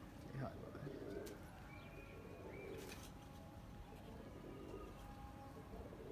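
Faint cooing of domestic pigeons, with a few thin, higher chirps from birds.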